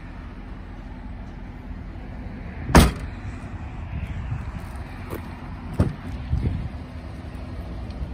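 A 2019 Subaru Crosstrek's rear hatch shut with one loud slam about three seconds in. A few softer knocks and clicks follow later as the rear side door is opened.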